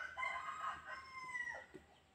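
A single faint, drawn-out bird call lasting about a second and a half, held at one pitch and ending abruptly.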